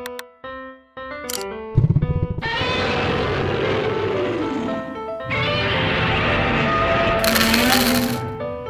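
Background music with a light plucked melody. From about two seconds in, a long, loud, rasping monster-roar sound effect is laid over it, with a falling pitch. A second roar follows at about five seconds and ends in a bright hiss.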